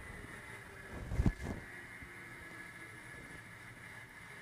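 Faint onboard sound from a motorcycle's action camera: steady wind rush over the microphone with the engine running underneath, and a single thump about a second in.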